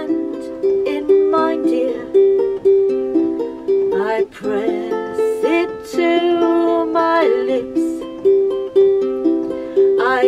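Ukulele played with a picked melody of clear, separate notes. A singing voice comes in briefly a few times near the middle.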